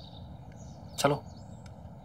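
A man says one short word about a second in, over a quiet outdoor background with faint bird chirps.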